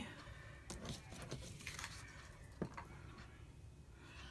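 Quiet room tone with a few faint, short taps of light handling noise.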